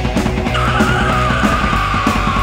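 Mid-1980s heavy metal song playing at full band level with a steady beat. About half a second in, a long held high note with a wavering pitch comes in over the band and slides slowly downward.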